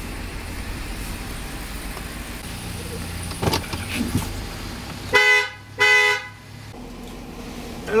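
Car engine running low as the car rolls up and stops, then two short car-horn honks about half a second apart, sounded to call for service.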